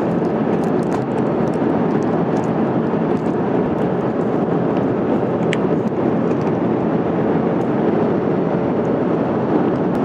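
Steady cabin noise of an Airbus A350-1000 in cruise: an even rush of engines and airflow, with a few faint light clicks over it.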